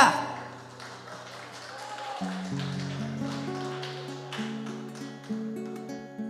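Soft acoustic guitar notes, held and picked quietly between songs, after a loud sung note cuts off right at the start.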